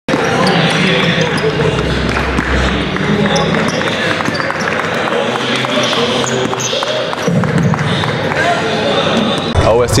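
Several basketballs being dribbled on a hardwood gym floor, a steady irregular patter of bounces over background voices.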